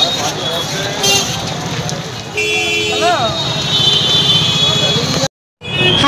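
Busy street with traffic running and a horn tooting now and then, with voices chattering in the background. The sound cuts out briefly near the end.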